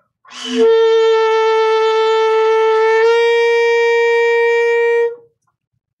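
Saxophone playing a scoop on octave G: one held note about five seconds long, started slightly flat with a breathy attack, then lifted up in pitch about three seconds in to land on G.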